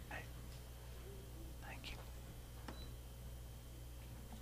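Quiet room with faint murmured voices and a steady low hum, plus a faint click near the end.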